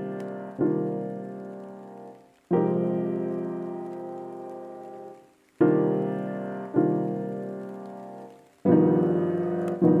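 Background music of slow chords, a new chord struck every one to three seconds and each left to ring and fade.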